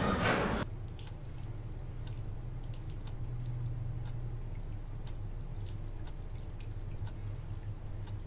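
Darkroom ambience: irregular water drips over a steady low hum. Under a second in, a louder, noisier background cuts off abruptly.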